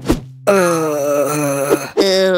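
A cartoon character's long strained groan, held on one slowly sinking pitch for over a second, starting about half a second in.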